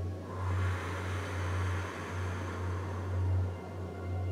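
One long, deep breath drawn in audibly, lasting about two and a half seconds from just after the start, over a steady low hum.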